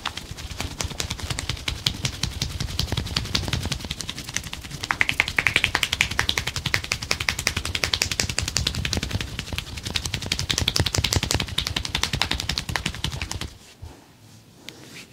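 Fast hand chops and slaps on a bare arm during a massage: a quick, even run of sharp skin strikes, many per second, that stops abruptly shortly before the end.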